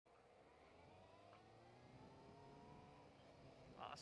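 Kawasaki ZZR600's inline-four engine heard faintly, its pitch rising slowly and steadily as the motorcycle accelerates.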